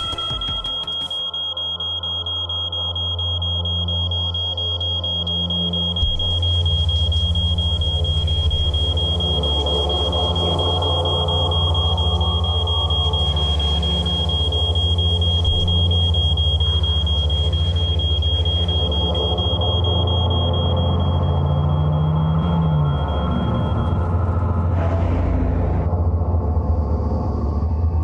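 Droning soundtrack: a deep, steady low rumble under sustained tones, with a thin high-pitched whine held over it that cuts off a few seconds before the end.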